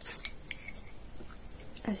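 Metal spoon stirring in a ceramic mug of cold cappuccino, clinking against the mug's side. There are a few light clinks with a brief ring in the first half second, then fainter taps.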